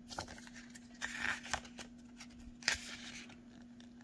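Pages of a small paper tarot guidebook being turned and handled, a few short rustles, the sharpest a little past the middle. A steady faint low hum runs underneath.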